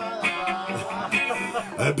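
Acoustic guitar strummed as song accompaniment, between sung lines.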